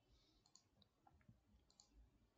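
Near silence: room tone with a few faint, tiny clicks scattered through it.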